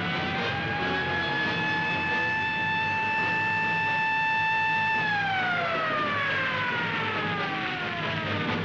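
Siren of a 1950s GMC rescue truck. It rises in pitch at the start, holds a steady wail for about five seconds, then winds down in pitch over the last three seconds.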